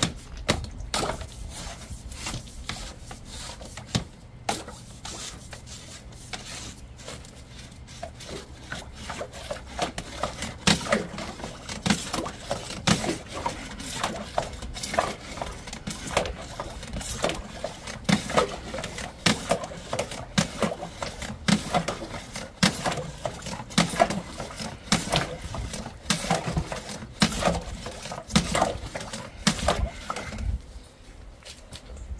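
Screw-together drain rods being worked along a blocked drain pipe: irregular knocks, scrapes and rubbing, coming faster and louder from about ten seconds in.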